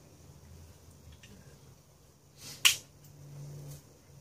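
A single sharp click about two and a half seconds in, over quiet room tone.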